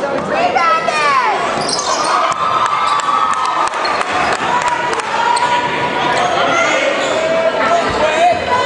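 Echoing gym sound of a basketball game: several voices yelling and shouting over crowd noise, with scattered sharp knocks such as a ball bouncing on the court.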